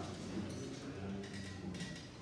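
Quiet room tone with a steady low hum and faint, indistinct voices in the background.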